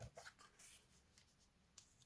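Near silence, with a few faint rustles and taps of paper being handled in the first second.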